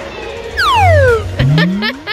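Edited-in cartoon sound effects over background music: a whistle-like tone sliding steeply down in pitch, then a lower tone gliding up.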